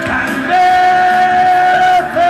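Live rock music: a band playing with a male singer, who holds one long steady note starting about half a second in.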